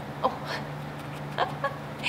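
Three-week-old Boston terrier puppy giving a few short, high squeaks while held up: one about a quarter second in, then two quicker ones around the middle.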